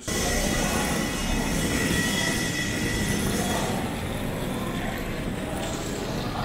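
Steady rumbling din of a busy airport kerbside pickup area, traffic and crowd noise together, with a faint steady high whine running through it.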